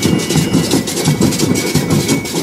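Marching band percussion playing a fast, even rhythm, with cymbal crashes and metal shakers over a low drum beat.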